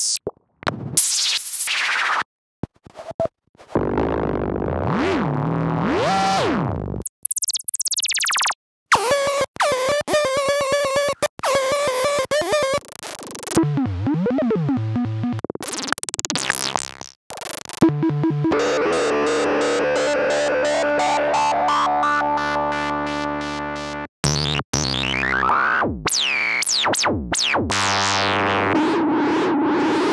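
Native Instruments Monark, a Reaktor-based Minimoog-style software synthesizer, playing one effects preset after another, each a few seconds long with short gaps between. The sounds include rising and falling pitch sweeps, a fast falling whoosh, and a long buzzy held tone.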